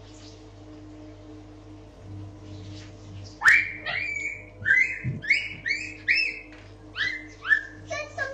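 A series of short, high-pitched squeaks, about two a second, beginning about three and a half seconds in, over a steady electrical hum.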